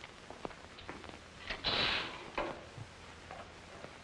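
Curtains being drawn shut: a swish of about half a second near the middle, with a few light clicks and knocks around it, over the steady hiss of an old film soundtrack.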